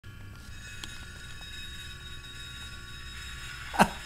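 Model train locomotives running on the layout: a steady electric motor hum with a thin high whine and a few faint ticks. Near the end there is one brief, loud sound that drops quickly in pitch.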